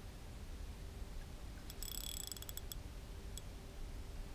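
Spinning reel on an ultralight rod being cranked during a jig retrieve: a quick run of small mechanical clicks about two seconds in, then a single click, over a low wind rumble on the microphone.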